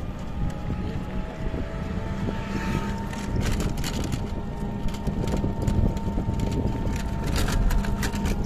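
Ride in a moving open vehicle: a steady engine or motor hum under road rumble, with wind buffeting the microphone and short rattles from a few seconds in.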